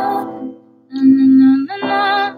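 Keyboard notes played with one hand, with a woman singing a wordless melody over them. A chord dies away in the first half, a new note is held from about a second in, and the voice comes back in near the end.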